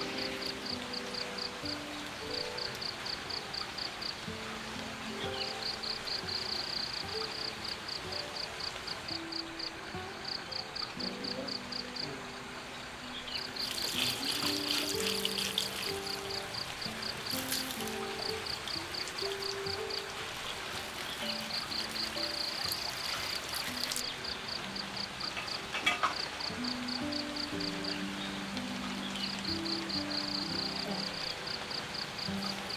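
Insects chirping in rapid, repeated pulse trains over soft background music. Through the middle, water pours in a few spells from a spout over cassava leaves in a woven basket. A short knock comes near the end.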